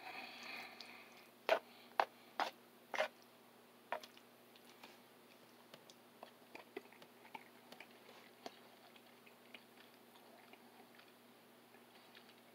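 A person chewing a mouthful of homemade chili, with a few sharp clicks in the first four seconds and quieter mouth smacks after.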